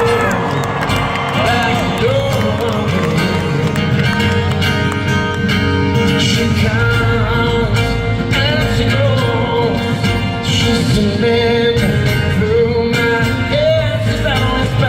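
A steel-string acoustic guitar played solo and amplified in a large hall: a busy fingerpicked part that runs steadily throughout.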